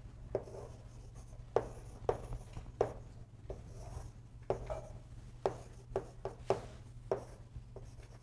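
Chalk on a chalkboard: a dozen or so short, sharp strokes and taps, irregularly spaced, as lines and letters are drawn, over a steady low room hum.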